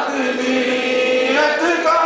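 Devotional vocal chanting in long held notes, the pitch shifting about one and a half seconds in.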